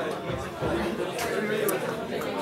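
Background chatter of several people talking at once, with overlapping voices in a large room.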